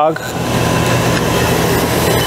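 Steady machine running noise with a low hum from an AMADA BREVIS laser cutting machine and its equipment, standing ready with no cutting under way.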